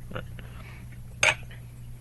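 A Madbull Black Python tightbore barrel set down on a wooden desk with a single sharp clink about a second in, over a steady low hum.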